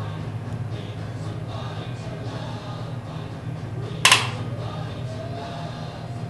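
A single short, sharp snap about four seconds in, over a steady low hum.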